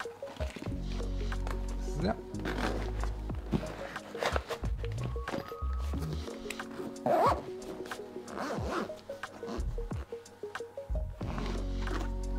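Zipper on the padded front pocket of a Gewa guitar gig bag being pulled in several short strokes as the pocket is closed over its contents, over background music.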